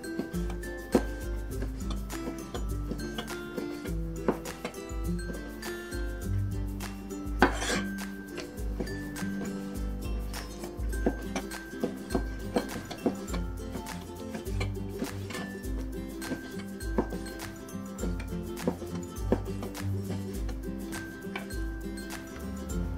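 Background music with a steady bass pattern, over irregular knocks of a cleaver striking a plastic cutting board as chicken thigh is sliced; one knock about seven seconds in stands out louder.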